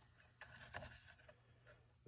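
Near silence: room tone with a few faint clicks and rubs as thin plywood model-ship parts are handled.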